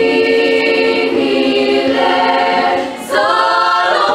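South African mixed youth choir singing a cappella: held chords, then a short break just before three seconds in and a fuller, higher-pitched entry.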